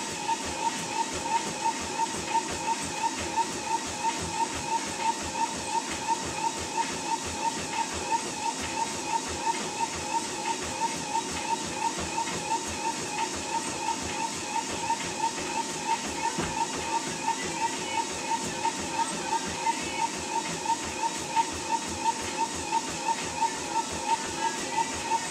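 Running footfalls on a treadmill belt in an even rhythm, over the treadmill motor's steady whine, which pulses with each stride.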